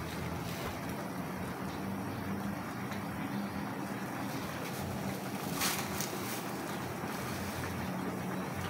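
Steady rumbling hiss of a gas stove burner under a pan of simmering liquid, with a short plastic crinkle about five and a half seconds in as a bag of misua noodles is handled over the pan.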